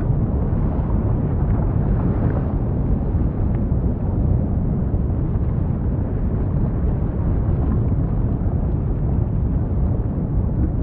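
Erupting basaltic fissure vent with lava fountains: a steady, deep, noisy rumble without separate bursts.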